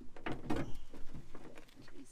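A car battery and hand tools being handled in the boot of a classic Mini as a new battery is fitted: a run of knocks and clicks, loudest just after half a second in.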